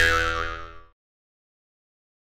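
A cartoon 'boing' sound effect: a springy tone that swoops down and back up in pitch, fading out about a second in.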